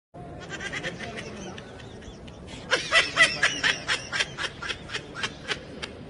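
A person laughing in a fast run of short bursts, faint at first and much louder from about three seconds in.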